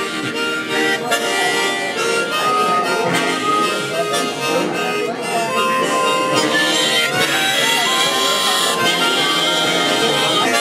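Several harmonicas playing together, among them a large chord harmonica, in a steady run of sustained chords under a melody line.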